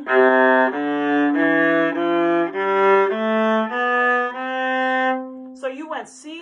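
Viola bowed through a one-octave ascending C major scale from the low C string: eight even, separate notes stepping upward, each about two-thirds of a second long. The top C is held a little longer and stops about five seconds in.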